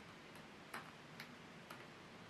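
Faint computer keyboard keystrokes, a few single clicks about half a second apart, over near-silent room tone.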